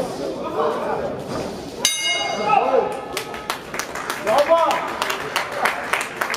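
Boxing ring bell struck once about two seconds in, ringing and dying away within about a second, signalling the end of the round. Voices carry on around it, and scattered clapping follows.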